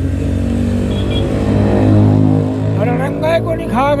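A motor vehicle's engine passing by, swelling to its loudest about halfway through and then fading. Speech resumes near the end.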